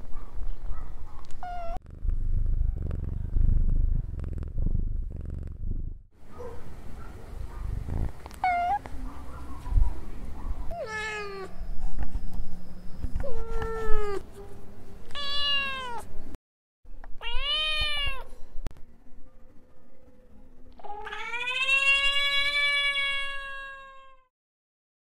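A cat meowing about seven times, each meow rising and falling in pitch, ending in one long drawn-out meow. A low rumbling noise runs under the first few seconds.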